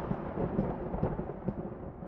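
Rumbling sound effect at a break transition, fading out, with the hiss on top dying away first so it grows duller as it goes.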